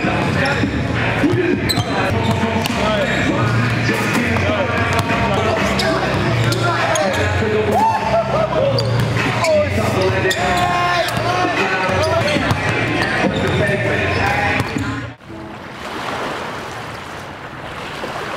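Basketballs bouncing on a gym's hardwood floor amid voices and music. About fifteen seconds in it cuts to the steady rush of small waves on a beach.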